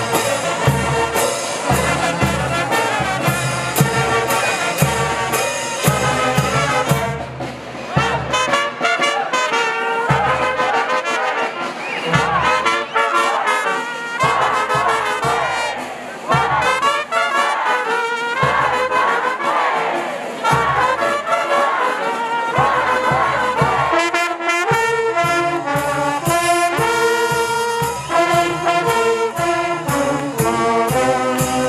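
Brass band playing: trumpets and tubas carry the melody over a bass drum. The drum beat is steady at first, thins out through the middle, and comes back as a steady beat near the end.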